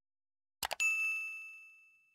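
A quick double mouse-click, then a single bright bell-like ding that rings and fades away over about a second and a half: the sound effect of a notification bell being clicked.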